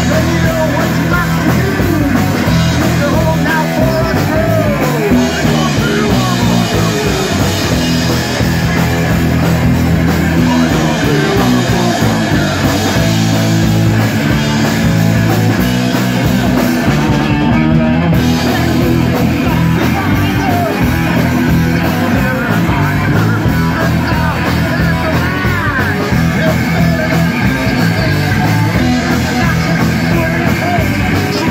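Live rock band playing loud through amplifiers: electric bass, electric guitar and drums, with singing over them.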